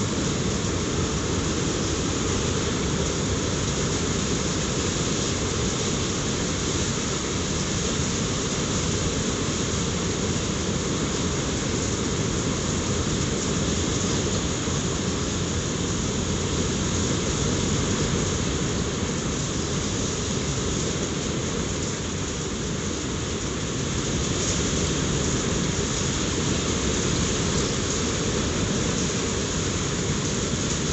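Heavy hail mixed with rain pelting a timber deck, a covered barbecue and a lawn, making a dense, steady noise of countless small impacts.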